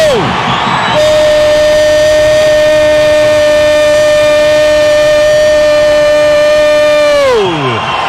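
A commentator's long drawn-out goal cry, one high note held steady for about six seconds that slides down in pitch as it ends. It follows a second of crowd noise: the call of a goal just scored.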